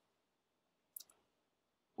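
Near silence, with one faint, short click about a second in.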